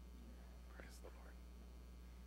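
Near silence: a low steady hum, with a faint whisper about a second in.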